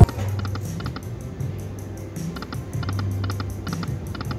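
Aristocrat Lightning Link video slot machine spinning: short runs of light clicks as the reels spin and stop, over the machine's low, steady musical tones.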